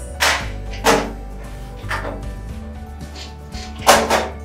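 Background music, with four short noisy clacks and rustles as a folding wheelchair frame is opened and handled. The loudest comes just before the end.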